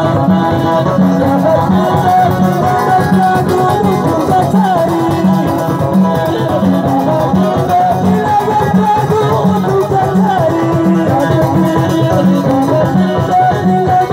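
Live band music played loud, with banjo and guitar carrying a gliding melody over a steady quick beat of about three pulses a second.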